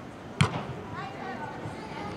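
A soccer ball struck once by a player, a single sharp thud about half a second in.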